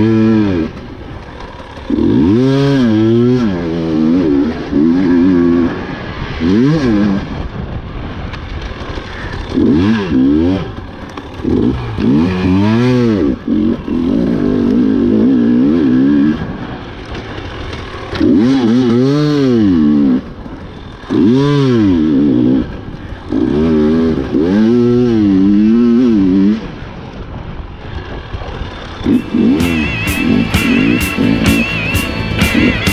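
Husqvarna TE 300 two-stroke enduro engine under hard riding, revving up and backing off over and over, its pitch climbing and falling in surges of a second or two with brief dips as the throttle is closed.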